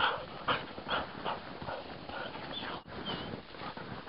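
A dog panting in short, quick breaths about twice a second, with a couple of brief high whines about three seconds in.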